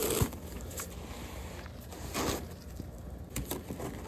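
Plastic cup scraped through fresh snow on a wooden deck railing, scooping it up, with a longer scrape about two seconds in, then gloved hands packing snow into the cup with a few soft taps and crunches near the end.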